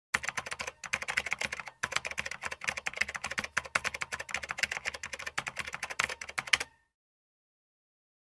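Fast typing on a computer keyboard: a dense, steady run of keystroke clicks with two short pauses in the first two seconds, stopping abruptly about seven seconds in.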